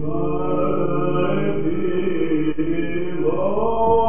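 Byzantine chant in the first mode (echos protos): male cantors singing a slow, melismatic melody over a steady low held drone (ison). The melody climbs about three seconds in.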